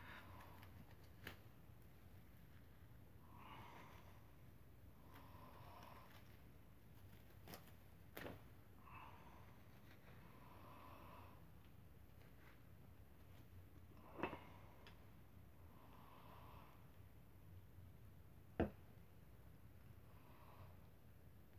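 Near silence: faint handling of a nylon rope being looped in gloved hands, with a few soft clicks and quiet breaths.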